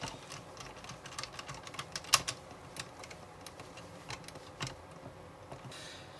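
Light, irregular clicks and ticks of a hand precision screwdriver driving two small screws to fix the stabilizer (anti-roll bar) to a scale-model car chassis, with one sharper click about two seconds in.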